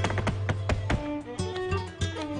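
Live flamenco music: acoustic guitar notes over a run of sharp, irregular percussive strikes.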